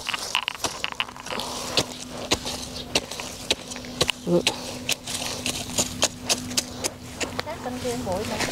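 A small hand trowel scraping and chopping into dry, clumpy soil, a scattered run of sharp clicks and scrapes, as the soil around a newly planted lemongrass clump is loosened. A steady low hum runs underneath from about half a second in.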